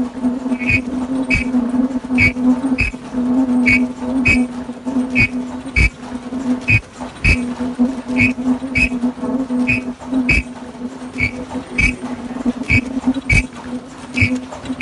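Automatic face-mask making machine running: a steady buzzing hum with sharp mechanical clacks that come in pairs about every second and a half as the mechanism cycles.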